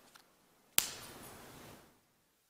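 A single sharp knock or click in a large, hard-walled room about a second in, followed by a moment of faint room noise before the sound cuts out entirely.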